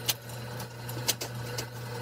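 A printing press running: a sharp mechanical clack about once a second over a steady low hum.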